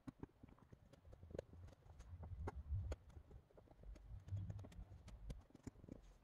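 Faint, scattered clicks and soft knocks, with low rumbles, from hands and a pointed tool working rolled salt dough on a craft mat.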